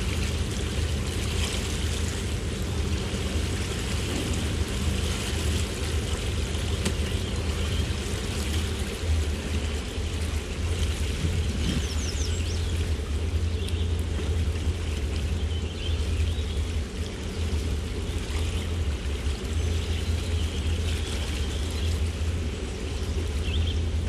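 Sea Ray Sundancer's MerCruiser 7.4 inboard V8 running at slow cruising speed, a steady low rumble, with water washing and trickling along the hull.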